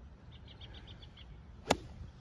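A golf club striking the ball on a full pitching-wedge shot: one sharp, sudden crack near the end.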